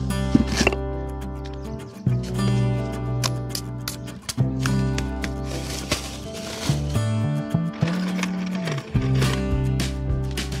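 Instrumental background music with sustained bass notes that change every second or so, with scattered sharp clicks through it.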